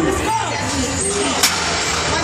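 Busy weight-room background of voices and music, with one sharp knock about a second and a half in.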